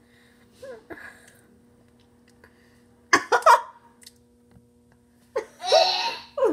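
A girl's short vocal "uh" about three seconds in, then a burst of laughter starting near the end. A faint steady hum lies underneath.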